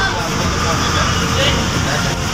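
Cooked rice being scooped out of a large aluminium cooking pot and dropped into a plastic tub, over a steady low rumble like traffic and faint background voices.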